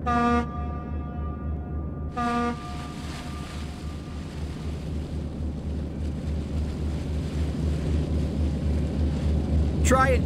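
Tugboat whistle giving two short toots about two seconds apart, the second trailing off, over a steady low rumble.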